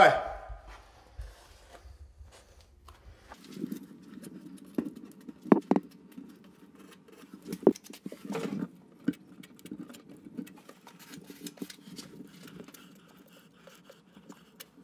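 Scattered light knocks, taps and clicks of hands working under a sink inside a vanity cabinet, over a low steady hum that starts about three seconds in.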